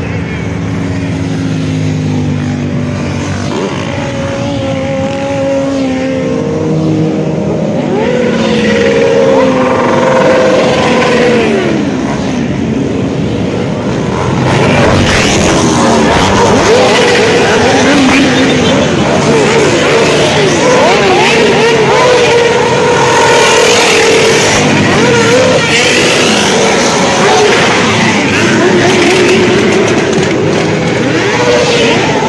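A large pack of motorcycles riding past, many engines revving with their pitch rising and falling as bikes go by. The sound gets louder about halfway through and stays loud.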